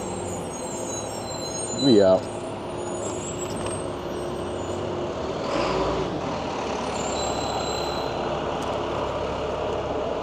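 Street traffic under an elevated rail line, with vehicle engines running steadily, heard from a moving e-bike. A brief hiss swells about six seconds in.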